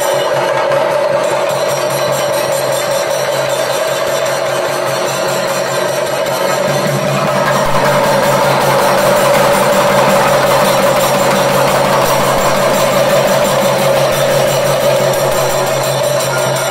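A group of chenda drums played in fast, continuous rolls, the percussion of a Thidambu Nritham temple dance, with a steady held tone beneath the drumming.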